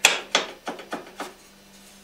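Hand tools clicking and knocking against the motorcycle's exhaust fittings while the pipe is loosened: about five sharp clicks in the first second or so, then quieter, with a faint steady hum underneath.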